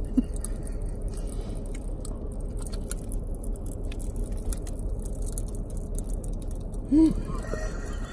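Japanese popping candy crackling in mouths: a steady scatter of tiny pops and clicks over a low hum, with a short vocal sound about seven seconds in.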